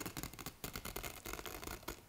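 Utility knife blade slicing through the quilted fabric of an Eight Sleep Pod 3 mattress cover, a dense, uneven run of small clicks as the fibres part.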